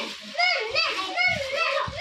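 A child's high-pitched voice talking, with the pitch rising and falling in short phrases.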